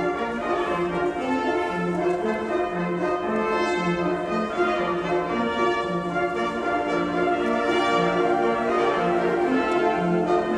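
A wind symphony, a concert band of woodwinds and brass, playing held chords over a low line that steps from note to note.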